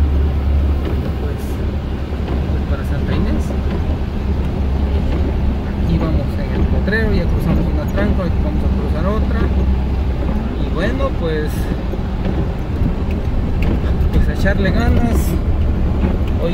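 A vehicle's engine running steadily as it drives along a wet dirt road, with the low rumble of engine and road noise heard from inside the cab and rain on the windshield. Faint voice-like sounds bend up and down in the middle and near the end.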